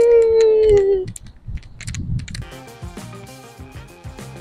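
A voice holding one long note, slowly falling in pitch, that ends about a second in; a few sharp clicks follow, then background music comes in about halfway through.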